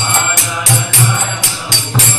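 Kirtan instrumental between chanted lines: metallic jingling strokes in an even beat of about four a second over a low sustained note.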